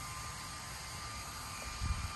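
Steady low whirr and hiss of small battery-powered personal cooling fans, with a thin constant high whine from their motors and a brief low bump near the end.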